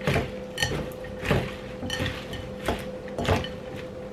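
Salad tossed and pressed together by hand in a bowl: leaves rustling, with about five light knocks and clinks against the bowl.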